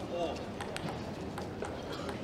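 Table tennis ball bounced a few times before a serve: light, sharp clicks at uneven spacing, with a short voice from the hall at the start.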